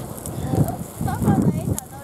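Indistinct talk between people, with short spoken fragments over a steady low rumble.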